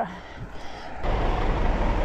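Steady low vehicle rumble that starts suddenly about a second in, close beside a large truck.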